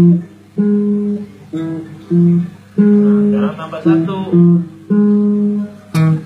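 Acoustic guitar music: a melody of held plucked notes in short phrases, with a busier strummed passage in the middle.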